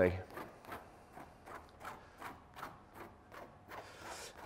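Paintbrush dabbing and scraping thick paint onto canvas in short vertical strokes, a faint scratchy stroke about three times a second.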